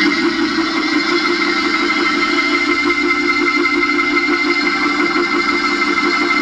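Organ holding one long, sustained chord.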